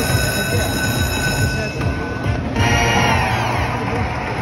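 Lightning Link High Stakes slot machine sound effects during its free-games bonus: a bright ringing chime that starts suddenly and holds for nearly two seconds. Then, about two and a half seconds in, a shimmering, sparkling sweep plays as the briefcase money symbol breaks open. Both run over the game's music and casino background noise.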